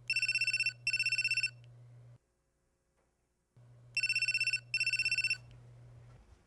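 Telephone ringing in a double-ring pattern: two short, fast-warbling electronic rings, a pause of about two seconds, then two more, each pair over a low steady hum.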